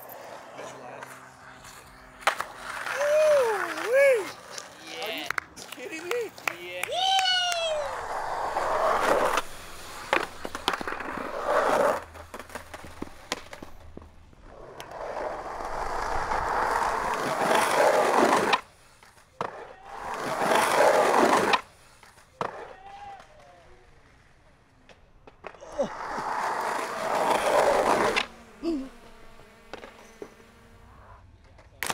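Skateboard wheels rolling over concrete and asphalt in several separate runs, each building up and cutting off, with sharp clacks of the board between them. Short shouts come in during the first few seconds.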